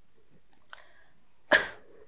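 A woman's single short cough about one and a half seconds in, sudden and dying away quickly, with a faint click shortly before it.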